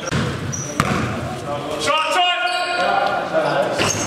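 Basketball game play in an echoing gym hall: the ball bouncing, with a sharp knock a little under a second in.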